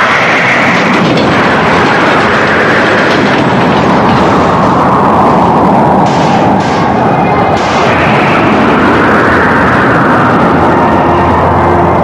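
Sound effect of a violent crash and explosion in an animated series: a sustained, loud rushing roar that rises and falls in pitch, with two short sharp cracks near the middle.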